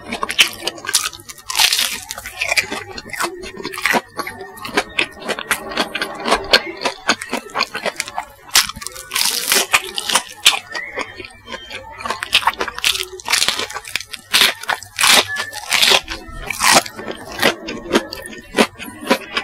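Close-miked chewing of sauce-dipped crispy chicken nuggets with a bubble-crumb breading, an uneven stream of loud crunches and crackles as the coating breaks between the teeth, with a fresh bite partway through.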